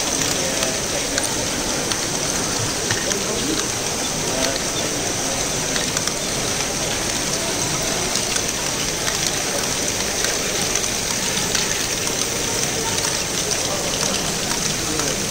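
Steady, dense clatter of many small plastic balls rolling, dropping and rattling through a row of running LEGO Great Ball Contraption modules, with a hum of many voices behind it.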